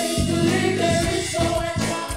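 A worship team of several singers sings a gospel song in harmony into microphones, holding long notes over electronic keyboard accompaniment.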